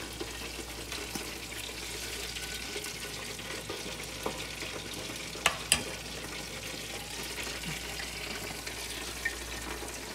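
Beaten eggs with onions and peppers frying in a skillet: a steady, fine sizzle. Two sharp clicks come a little past halfway.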